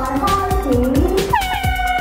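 Music with a steady beat plays over a PA, with a high voice calling out in gliding tones. About two-thirds of the way in, a handheld compressed-air horn starts one long, steady blast at a single pitch.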